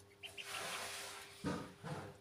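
Ducklings moving about on the floor of a box: about a second of rustling, then two short knocks near the end.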